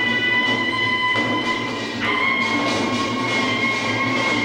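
Korean pungmul farmers' band music: hand drums beaten in a steady rhythm under a piercing reed pipe holding long high notes, the melody moving to a new note about two seconds in.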